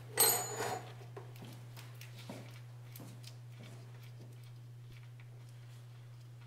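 A short metallic clatter of a ratchet and socket about a quarter second in, with a brief ring. After that only a steady low hum and a few faint ticks remain while the drain plug is turned out by hand.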